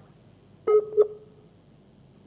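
Two short electronic beeps, about a third of a second apart.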